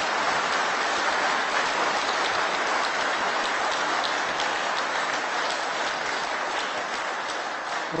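Audience applauding steadily in a large hall, easing a little near the end.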